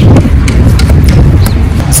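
Wind buffeting the microphone: a loud, continuous low rumble, with a few light clicks.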